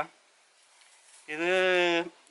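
A man's voice: a pause, then one drawn-out vowel held at a steady pitch, starting a little past halfway.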